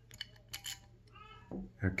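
A few light metallic clicks from a lever-handle door lock's key cylinder and handle as they are handled and worked apart, the clicks coming in the first second or so.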